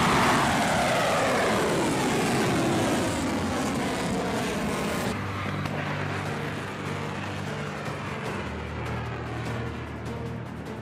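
Missile rocket motors roaring at launch. A loud roar starts suddenly, falling in pitch as it climbs away and slowly fading. After a cut about five seconds in, a second, quieter launch roar follows with a low steady hum beneath it.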